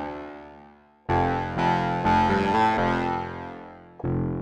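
Native Instruments Massive synth playing the 'Dissonant Guitar' preset, a guitar-like patch. A held sound dies away over the first second. Then new low notes, played as a bass line, are struck about a second in and change a few times before fading near the end.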